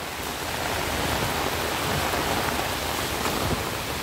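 Heavy hurricane rain pouring steadily onto foliage, roofs and a waterlogged gravel lane.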